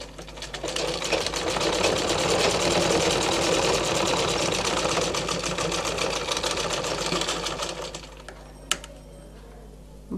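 Domestic sewing machine stitching a seam: a fast, even run of needle strokes that picks up speed over the first second or two, holds steady, and slows to a stop about eight seconds in. A single sharp click follows shortly after.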